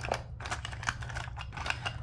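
Pens, scissors and small plastic craft tools clicking and rattling against each other as hands sort through a packed clear zippered pencil pouch, in a run of irregular light clicks.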